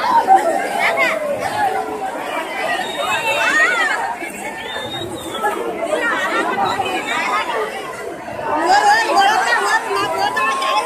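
Dense crowd of many voices talking and calling out at once, dipping a little in the middle and swelling again about a second before the end.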